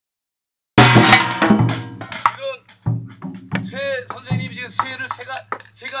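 Traditional Korean pungmul drum struck with a stick: a quick run of loud strokes about a second in, then spaced single strokes each leaving a low ring, with a voice in between. It is the same pattern struck in three different ways.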